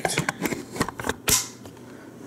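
A quick run of light clicks and clattering knocks from handling, about a dozen in the first second and a half, then quiet.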